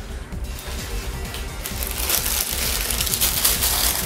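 Background music throughout, with tissue paper crinkling and rustling from about halfway through as it is lifted and folded back from a pair of shoes in a cardboard shoebox.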